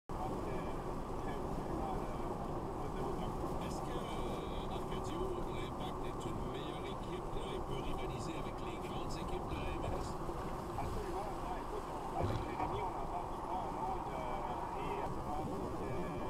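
Steady road and engine noise of a car at highway speed, heard from inside the cabin.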